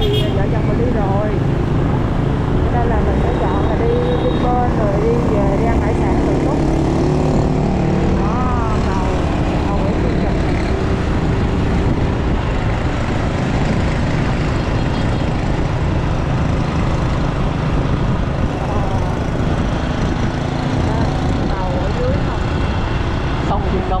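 Steady road and wind noise from a motorbike ride, with the scooter's engine and passing motorbike traffic. Snatches of voices come through in the first few seconds, again around a third of the way in, and near the end.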